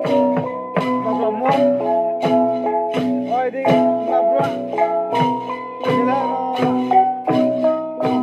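Jrai cồng chiêng gong ensemble: a set of tuned gongs struck in a steady interlocking rhythm of about three strokes a second. Each gong rings on, so the tones overlap into a continuous layered chime, some bending slightly in pitch as they fade.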